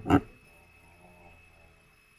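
A man's short, sharp vocal sound right at the start, then near silence with a faint low murmur.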